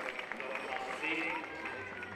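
A large crowd of marathon runners: many voices talking at once over the sound of many feet running.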